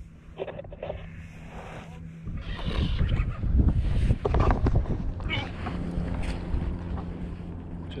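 Wind buffeting the microphone and water sloshing around a kayak at sea. The rough noise gets louder from about two and a half seconds in, as a fish is hooked and the rod is worked.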